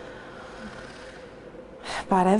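Faint steady room tone, then a woman's quick, sharp in-breath near the end.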